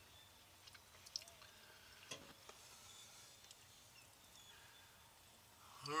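Near silence: faint room tone with a few small scattered clicks.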